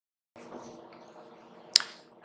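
Faint room tone with a steady low hum, then a single sharp click near the end.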